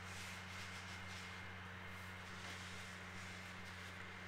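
Mini Maker hand-cranked die-cutting machine faintly rolling a cutting-plate sandwich through its rollers, a quiet even rolling hiss over a steady low electrical hum.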